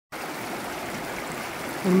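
Shallow, rocky mountain river running over and around boulders: a steady rush of water.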